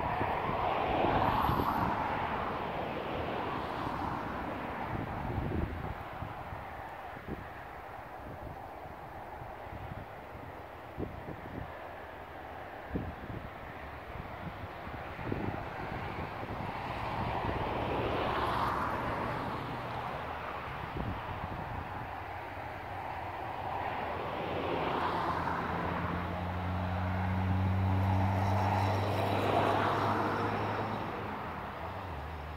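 Distant engine noise swelling and fading several times, with a steady low engine hum in the last few seconds and some low rumbling thumps of wind on the microphone.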